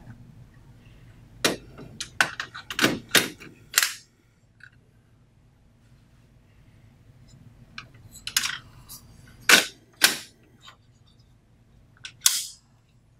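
Sharp plastic clicks and knocks as a print head is seated in the carriage of a Canon imagePROGRAF PRO-4000 large-format inkjet printer and its lock lever is closed. A quick run of clicks comes in the first few seconds, then a pause, then a few more loud clicks past the middle.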